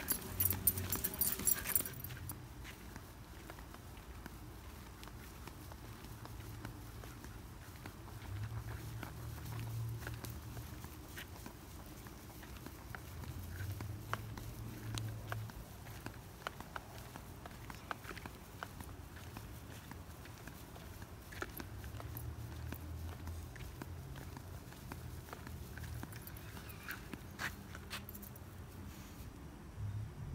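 Quiet sounds of a Siberian husky being walked on a leash over grass: faint footsteps and scattered light clicks over a low rumble that comes and goes, with a brief brighter jingle in the first couple of seconds.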